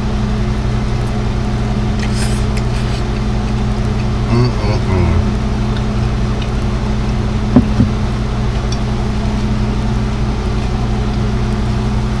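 A steady low mechanical hum of several even tones throughout. A brief rustle comes about two seconds in, a faint murmur about four and a half seconds in, and a single sharp click about seven and a half seconds in.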